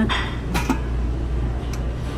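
Lid of a stainless steel buffet soup well being lifted, with a short metal clink about half a second in, over a steady low hum.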